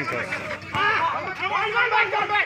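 Men's voices shouting and calling out over one another during a volleyball rally, with one sharp smack about three quarters of a second in.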